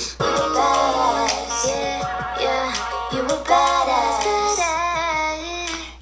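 A recorded song playing, with a woman singing over the backing track.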